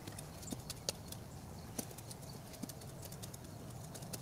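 Dry leaf litter and mulch crackling under hands working a garden bed, a scattering of light, irregular clicks over a faint steady low hum.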